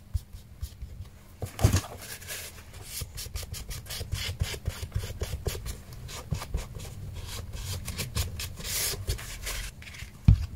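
Paper being creased and rubbed along the fold with a bone folder: a run of quick rubbing strokes, several a second, for most of the time. A thump comes about two seconds in.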